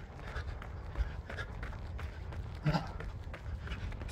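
A runner's breathing and footfalls while running, over a steady low wind rumble on the phone's microphone. A short voiced breath or grunt comes in a little past halfway.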